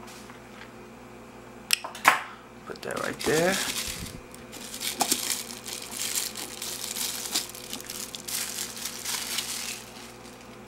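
Thin plastic wrapping crinkling and crackling for several seconds as it is pulled off a bar utensil. Two sharp clicks come a little earlier.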